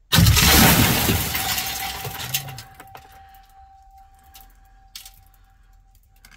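A sudden loud crash with a shattering, breaking character, dying away over about two seconds. A few sharp ticks and a faint steady ringing tone follow it.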